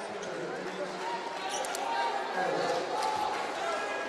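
Basketball arena ambience: a steady murmur of crowd voices in a large hall, with a basketball being bounced on the hardwood court and a few short sharp sounds a little under two seconds in.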